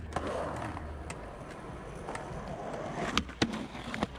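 Skateboard wheels rolling over concrete, then near the end two sharp knocks as the skater pops an ollie and the truck lands on the concrete ledge to start a frontside Smith grind.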